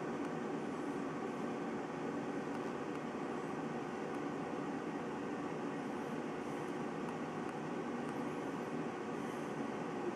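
Steady hiss and rumble of water heating around two submerged DC water heater elements, like a kettle nearing the boil as bubbles form on the hot elements.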